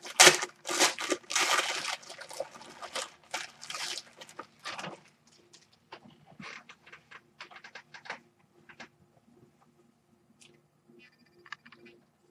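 Plastic packaging crinkling and tearing as a shirt is unwrapped, dense for the first few seconds, then thinning to scattered rustles and falling almost quiet near the end.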